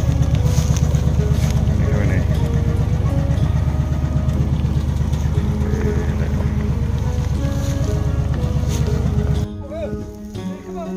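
Tractor engine running steadily and close, pulling a trailer loaded with harvested rice straw; its low pulsing hum cuts off suddenly near the end.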